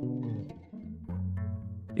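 Quiet background music of low strings, plucked and bowed, holding a few sustained notes that change about a second in.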